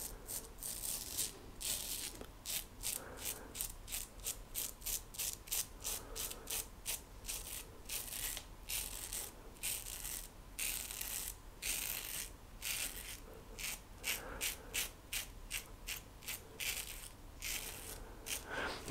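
A 1940s GEM Flip Top G-Bar single-edge safety razor with a new GEM blade cutting through lathered stubble on the neck: a run of short scratchy scrapes, about two or three a second, one per stroke.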